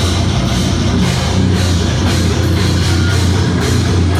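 A death metal band playing live: distorted guitars and bass over a drum kit, loud and steady throughout.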